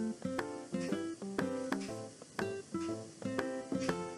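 Soft background music of plucked guitar-like notes, picked one after another in a light, even run.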